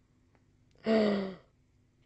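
A woman's breathy sigh about a second in, lasting half a second, its pitch falling.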